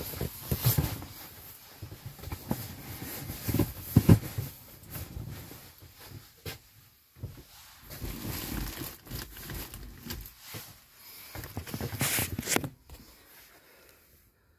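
Irregular rustling and dull knocks of handling, loudest about four seconds in and again near twelve seconds, fading out near the end.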